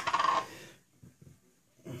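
A short clatter of a small hard object being handled and set down, fading within about half a second, followed by a couple of faint knocks.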